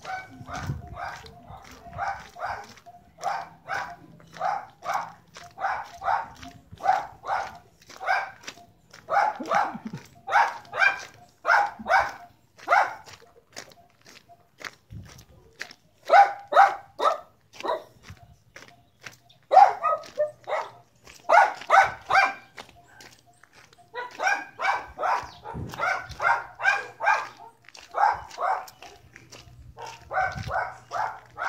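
A dog barking over and over, about two to three barks a second, in runs broken by a couple of short pauses.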